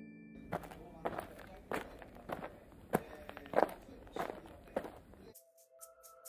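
Soft clicks and scrapes about every half second, a tortoise moving over bark-chip substrate. Steady background music tones come in near the end.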